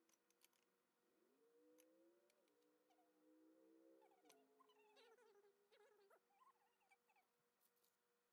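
Near silence: faint room tone with a few soft clicks and taps as hands place toppings on a sandwich.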